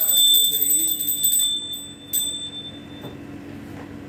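Small puja hand bell rung rapidly for about a second and a half, then struck once more briefly about two seconds in, its high ringing fading away afterwards.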